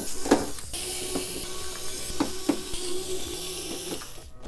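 Screws being backed out of the steel back panel of a Thermaltake Core P3 PC case with a screwdriver, with a few small metallic clicks as the screws come free and are set down, over a steady high hiss.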